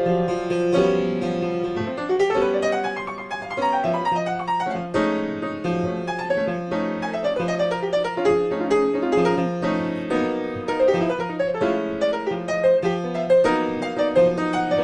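Solo jazz piano played as an instrumental passage: struck chords and running single-note lines, with no singing over it.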